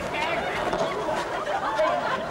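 A crowd of children shouting and chattering over one another, many high-pitched voices at once with no single voice standing out.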